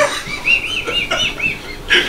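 A person's high, squeaky laughter: a quick run of about seven rising-and-falling squeals, around five a second.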